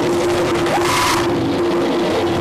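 Live band music: electric guitars and bass over a djembe hand drum, with a note held steadily throughout and a brief noisy swell about a second in.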